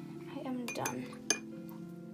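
A few light clinks of a hard painting tool, such as a brush handle, knocking against the palette or table, the sharpest a little over a second in. Soft background music runs under them.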